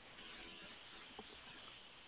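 Near silence: a faint steady hiss, with one faint tick a little past the middle.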